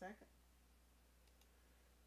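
Near silence over a steady low hum, with a couple of faint computer mouse clicks a little over a second in as a right-click menu is opened.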